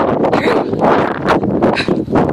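Wind buffeting a phone's microphone, loud and uneven in gusts.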